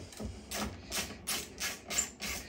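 Hand screwdriver driving a rack screw through a metal rack ear: short rasping strokes, about three a second.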